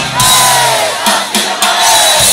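Live rock band playing through a concert PA, with crowd voices near the microphone yelling over the music.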